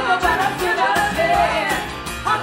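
Live pop-rock band: women's voices singing into microphones, lead and backing, over strummed acoustic guitar and keyboard.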